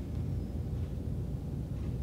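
Steady low rumble of background room noise, with no voice over it.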